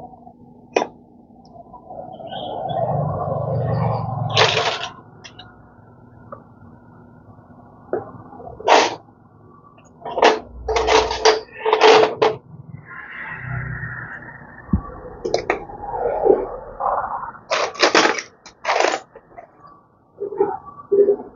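Metal tools and parts clinking and knocking as they are handled, a dozen or so separate clanks, some in quick clusters, with stretches of rubbing or scraping between them.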